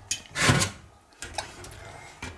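Handling noise of a mesh strainer and a mug against a steel pot of cheese curds as whey is scooped off: a short loud scrape or knock about half a second in, then quieter clatter and a small click.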